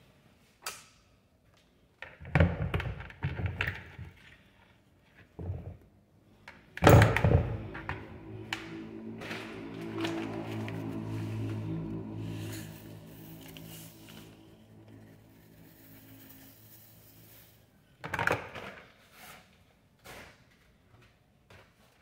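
Sneakers set down in a hard plastic tub with a few thuds, the loudest about seven seconds in. Then comes plastic-bag rustling as a granular powder is poured from a plastic scoop onto the shoes, with more knocks of plastic on plastic near the end.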